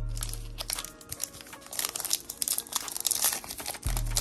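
Foil hockey card pack wrapper being torn open and crinkled by hand, a rapid run of crackles building through the second half, with background music underneath.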